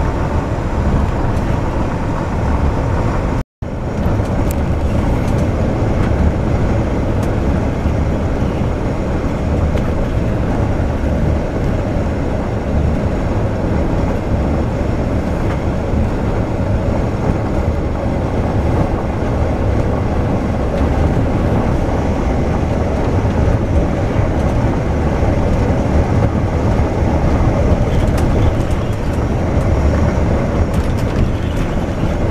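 Volvo B450R double-deck coach underway: steady engine and road noise heavy in the low end, with a brief cut to silence about three and a half seconds in.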